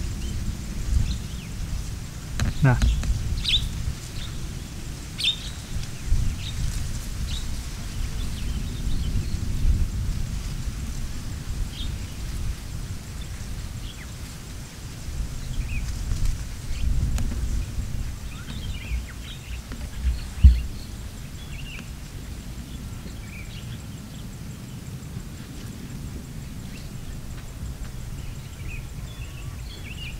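Low, continuous rumble of a volcanic rockfall and pyroclastic flow sliding down the volcano's slope, heard from a distance, with birds chirping now and then and a short thump about two-thirds of the way through.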